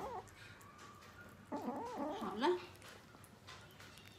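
A kitten vocalizing while eating: a short wavering cry just at the start, then a longer warbling call about a second and a half in that bends up and down in pitch for about a second.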